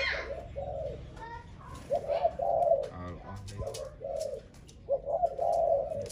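Spotted dove cooing: low, soft coo phrases repeated about every second and a half.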